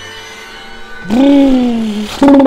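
Faint background music, then about a second in a loud, long held note in a voice, sliding slowly down in pitch.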